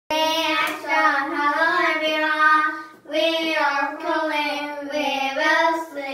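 Two young girls singing an English children's song together in unison, unaccompanied, in two long phrases with a short break about halfway.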